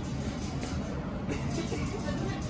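Steady low rumble of shop background noise.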